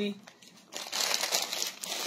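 Clear plastic packing bag crinkling and rustling as it is handled, a dense crackle starting just under a second in after a short lull.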